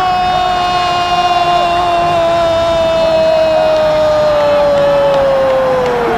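A long drawn-out shouted goal cry, 'gooool', held as one note that sinks slowly in pitch for about six seconds and breaks off near the end.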